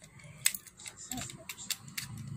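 Light plastic handling sounds as the pod tank is fitted back onto a VapX Geyser 100W pod mod: a few short sharp clicks, one about half a second in and two near the end, over faint rubbing.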